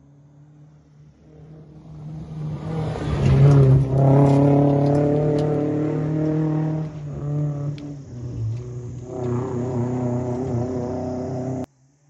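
Rally car approaching and passing at speed, its engine revving hard. The revs dip briefly about seven seconds in and pick up again, then the sound cuts off suddenly near the end.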